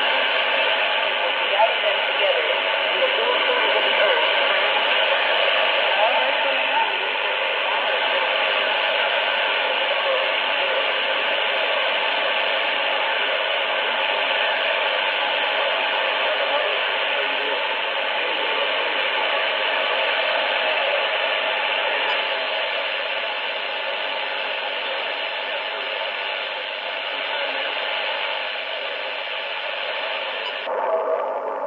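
Shortwave AM broadcast from CFRX Toronto on 6070 kHz, received across the Atlantic: faint voices through static and hiss, too noisy to make out, in thin, tinny audio that runs on without a break.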